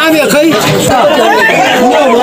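People talking, voices overlapping in chatter.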